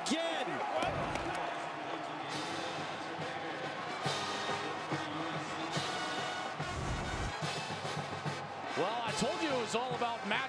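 A band playing in a football stadium over crowd noise, with a few loud crashes and low drum hits, as a celebration of a touchdown.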